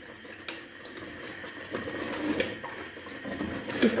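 Long metal spoon stirring thick puréed mustard-greens saag in a pressure-cooker pot, a steady low scraping with a few sharp clicks of metal on the pot.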